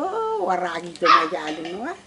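An elderly woman's voice in two long phrases whose pitch slides up and down, telling a folk tale in a drawn-out, sing-song way.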